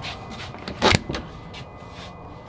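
A single sharp knock just under a second in, with a few fainter clicks, as someone climbs in through the open driver's door of a vintage Volkswagen bus. It sits over a steady low background hiss.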